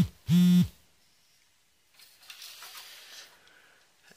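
A short hummed 'mm' from a straining voice. A moment later comes a faint scraping and rubbing as the graphics card's metal bracket is worked against the steel PC case's slot opening.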